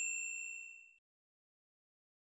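A single high bell ding, a notification-bell sound effect, ringing out and fading away within about a second.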